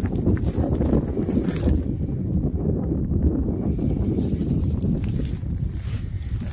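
Wind buffeting the camera microphone: a steady low rumble with no distinct events.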